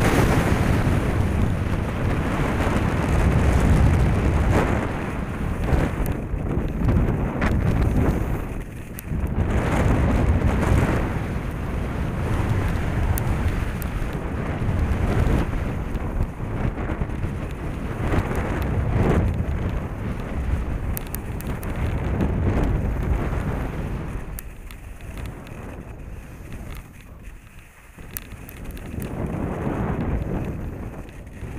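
Wind rushing over a helmet-mounted camera's microphone at skiing speed, mixed with skis hissing and scraping over hard-packed snow. The rush surges and eases with the turns, dies down for a few seconds near the end, then rises again.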